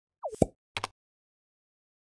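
Intro sound effect for an animated logo: a short falling whistle-like glide that ends in a plop, then two quick clicks about half a second later.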